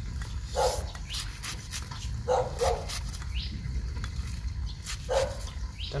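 A dog barking: about four short barks, one in the first second, two close together a little past two seconds in, and one near the end.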